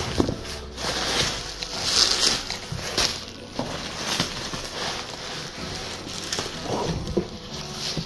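Handling of a cardboard shipping box and its packing by hand: flaps and wrapping rustling and scraping in a string of short, irregular bursts as the contents are dug out.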